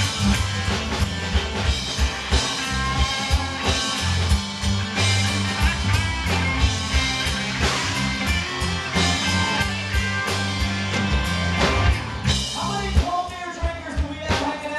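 Live country-rock band playing an instrumental section: drum kit, guitars and bass guitar driving a steady beat. Near the end the bass drops back and a singing voice comes in.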